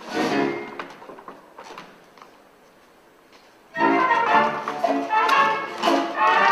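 Large pit orchestra with brass playing a loud chord that dies away, then about two quiet seconds with a few faint clicks, then the full band coming back in loudly near the end.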